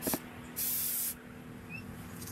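Aerosol spray paint can hissing in short spurts against a wall: a brief one at the start and a longer one of about half a second just after the half-second mark.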